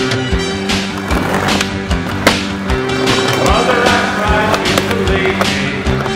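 Skateboard wheels rolling and the board clacking on street pavement and a ledge, under a music track with a steady beat.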